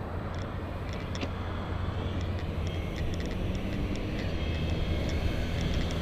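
Steady rumble of road and traffic noise heard from a moving camera, with scattered light clicks throughout.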